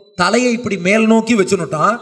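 Speech only: a man speaking into a microphone, starting a moment after a brief pause.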